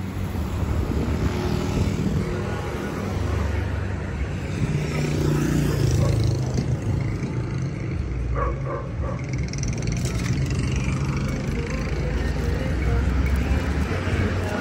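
Road traffic: car engines running as vehicles pass close by, with one engine rising in pitch about five seconds in.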